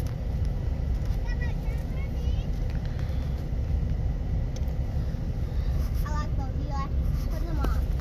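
Steady low rumble of a car heard from inside the cabin, with faint voices briefly in the background.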